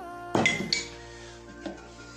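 Background music with steady held notes; about half a second in, a single sharp clink of a glass plate being set down on the table.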